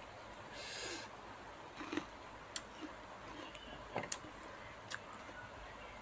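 Faint eating-table handling sounds: scattered small clicks and crackles as fingers pick at and peel rattan fruit, with a brief breathy hiss about a second in.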